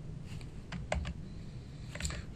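A few light computer keyboard key presses, spaced irregularly in the first second: keys being tapped to switch windows with Alt+Tab.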